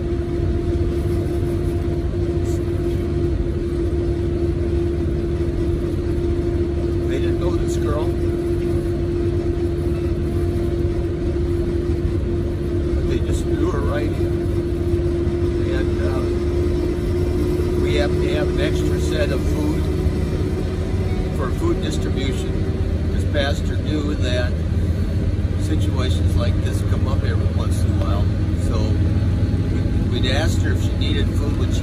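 Steady engine and road drone inside a minibus cabin, with a steady hum that fades away about two-thirds of the way through.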